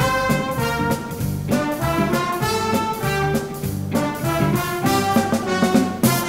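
Music: a band or orchestra with prominent brass, trumpets and trombones, playing lively dance music with a steady beat.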